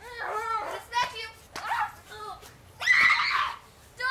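Young girls' voices shouting and squealing in short bursts, with one loud scream about three seconds in.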